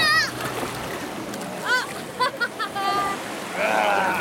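A child's high-pitched shout right at the start, then more short high calls and squeals from children, over the steady splashing and churning of wave-pool water.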